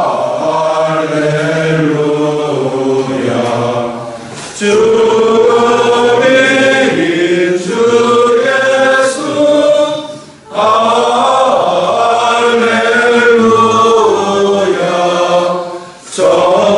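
A congregation of men and women singing a hymn together, in long sung phrases with short breaks for breath about four and ten seconds in.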